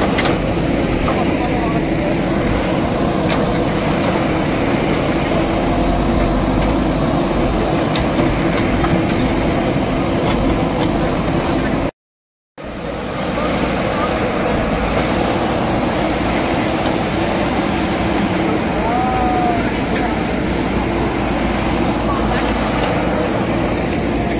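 JCB 3DX backhoe loader's diesel engine running steadily while its backhoe digs through landslide mud, with a crowd talking over it. The sound drops out for about half a second near the middle.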